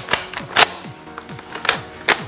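Pump handle of a spring-powered toy salt blaster being worked to prime it: a few sharp plastic clicks, the loudest about half a second in, from a stiff pump that is a tough prime. Music plays underneath.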